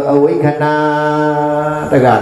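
A man's voice chanting a Buddhist Dhamma chant in long, steady held notes, with a short note and then one long sustained tone.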